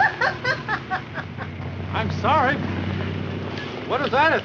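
A woman laughing hard in quick bursts, with another short run of laughter about two seconds in. Under it the city bus's engine gives a low rumble that grows louder about halfway through as the bus draws up.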